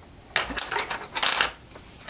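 Coloured pencils clinking and clicking against each other as one is picked out, a quick run of light knocks lasting about a second.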